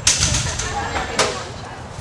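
Rowing shell being lifted and carried out by its crew: a sudden clatter with a hissing rush at the start and a second sharp knock about a second later, with faint voices.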